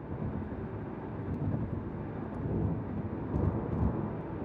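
Low road and engine rumble heard from inside a moving car, steady with small swells, with a few faint ticks.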